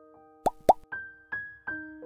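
A slide-transition sound effect: two quick pops, then a short jingle of single bell-like keyboard notes, one about every 0.4 s, each ringing on.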